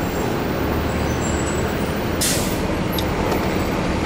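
City street traffic: a steady low rumble of vehicle engines, with a short sharp hiss a little over two seconds in.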